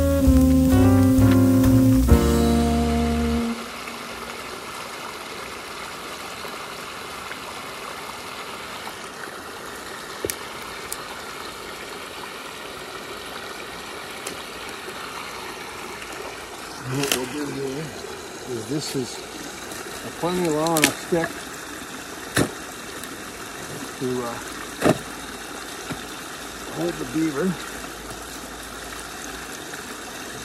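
Music ends about three seconds in, giving way to a steady trickle of water flowing at a beaver dam. From about halfway on it is broken by a few sharp knocks and short, faint voice-like sounds.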